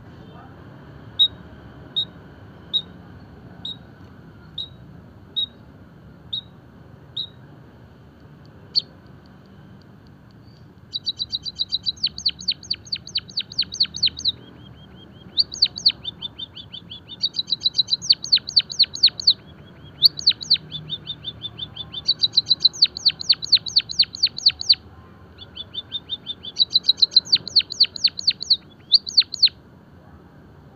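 White-headed munia (emprit kaji) calling and singing: single sharp high chirps about once a second at first, then rapid runs of high chirps in bursts of a few seconds with short pauses between them.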